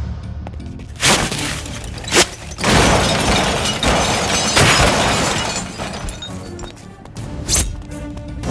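A car crashing into parked cars with glass shattering: two sharp hits in the first couple of seconds, then a long loud crash and smash lasting about three seconds, with one more hit near the end. Dramatic film background music plays underneath.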